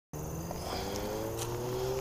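A car on the road running with its engine note rising slowly as it accelerates. The sound cuts in abruptly right at the start.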